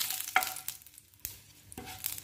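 Cumin seeds sizzling in hot oil in a nonstick frying pan while a wooden spatula stirs them, with a short scrape about a third of a second in. The sizzle dies down to almost nothing about a second in, then picks up again near the end.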